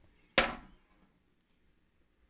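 A single sharp knock about half a second in: a small clutch assembly, a plastic hub on a metal shaft, landing on the bottom of a plastic bucket, with a brief ring-out.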